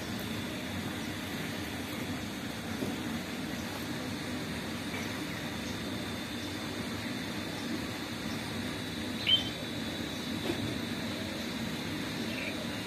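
Steady low outdoor background rumble with a thin, steady high tone running through it, and one short, sharp, high chirp about nine seconds in.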